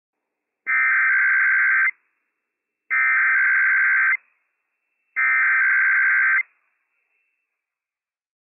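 NOAA Weather Radio EAS SAME header: three identical bursts of warbling digital data tones, each about 1.2 s long with about a second between them. They are the encoded alert header that opens a Required Weekly Test broadcast.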